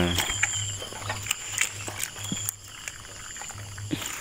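Insects chirping in a steady high trill, with scattered light clicks and rustles from a nylon fishing net being handled.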